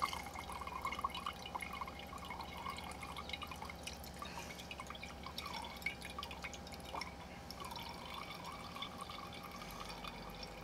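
Liquid dripping and trickling from a hand-squeezed cheesecloth bundle through a funnel into a glass quart mason jar: faint, irregular drips.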